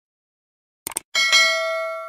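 A quick double click, then a small bell dings twice in quick succession and rings on, slowly fading. These are the sound effects of a subscribe-button animation, the cursor clicking the notification bell.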